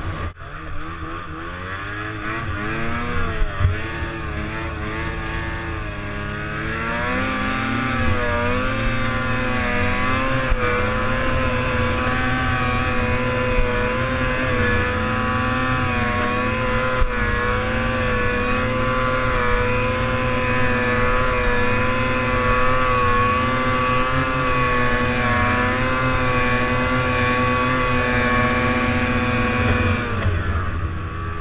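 Ski-Doo snowmobile engine under way. Its revs rise and fall for the first several seconds, then hold at a steady pitch as the sled runs on.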